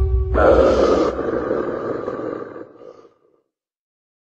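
Dramatic intro sound effect: a low rumble under a rushing noise that starts suddenly a moment in and fades away by about three seconds in.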